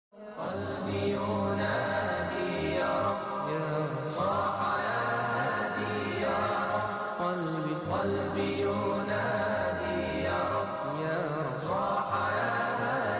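A voice chanting a slow, ornamented melody in long held phrases, a new phrase starting about every four seconds, over a steady low hum.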